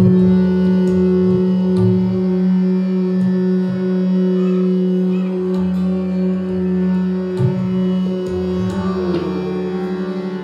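Hindustani classical vocal music: a male singer holds one long, steady note over a tanpura drone and harmonium, with a few soft tabla strokes underneath. The note bends near the end.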